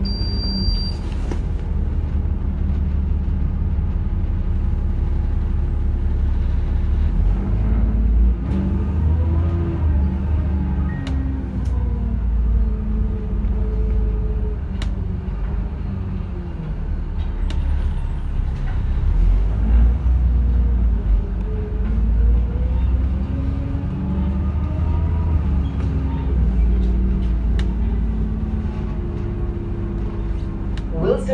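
Alexander Dennis Enviro400 double-decker bus on the move, heard inside the bus: a steady low rumble with a whine that rises and falls a couple of times as the bus speeds up and slows, and a few light clicks and rattles.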